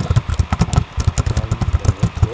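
Keyboard typing close to the microphone: rapid, irregular clicks with dull thumps beneath them.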